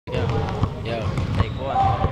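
Basketball bouncing on a gym's hardwood floor, a few sharp thuds, with people's voices talking over it.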